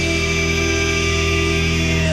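Hard rock recording: a sustained electric guitar chord rings steadily, with no drum hits.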